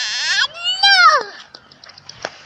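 A young child's high-pitched wordless squeal: a voiced sound trailing off in the first half second, then one cry that rises and falls in pitch, ending a little over a second in.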